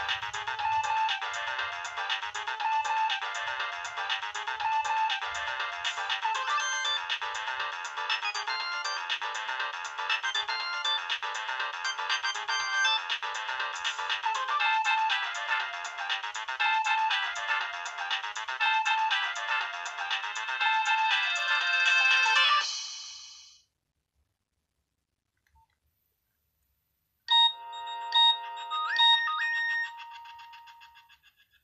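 A Nokia 6030's loudspeaker plays a polyphonic MIDI ringtone, a busy repeating melody that fades out about 23 seconds in. After a few seconds of silence a second tone starts with a few sharp, loud beeps followed by held notes.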